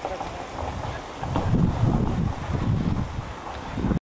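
Wind buffeting the camcorder microphone, a low irregular rumble that grows much louder about a second in.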